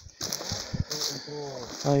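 Indistinct talking, with a short exclamation ("Aí") at the end, over a steady rustle and a few soft thuds from someone walking through brush on a dirt path.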